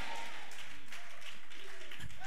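A congregation applauding steadily in a hall, with a few scattered voices calling out.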